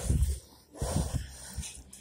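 A child sliding down carpeted stairs on blankets: low thuds at the start, then a breathy hiss about a second in and a few faint bumps.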